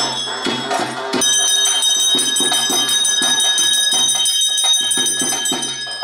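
A brass hand bell ringing continuously, its steady ring starting about a second in, over traditional ritual music with regular drumbeats.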